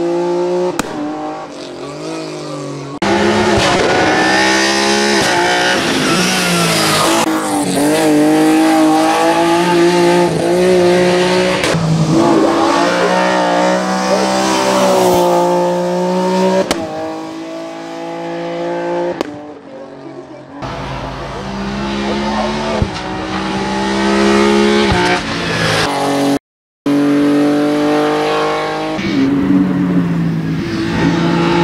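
Engine of a BMW E30 hillclimb race car revving hard and changing gear, its pitch repeatedly climbing and then stepping down at each shift as it accelerates past. The sound is cut between shots, with a brief dropout near the end.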